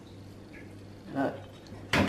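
Quiet kitchen with a faint steady low hum, then a single light clink of a plate against a nonstick frying pan near the end.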